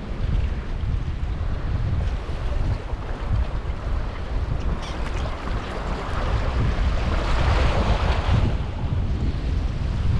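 Wind buffeting the microphone in uneven gusts, over water washing against the boulders of a rock wall; the wash grows louder for a moment about three-quarters of the way through.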